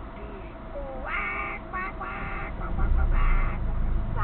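A bird calling several times in short, harsh bursts, over a low rumble that swells about three seconds in.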